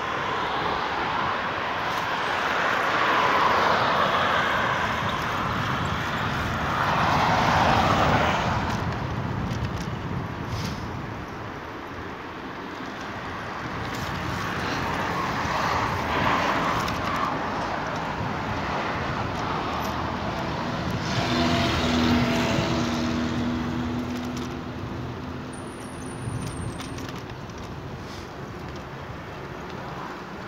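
Road traffic beside a bike path: cars passing one after another, with about four rushing swells of tyre and engine noise that rise and fade. About two-thirds of the way through, a steady low engine hum is heard for a few seconds.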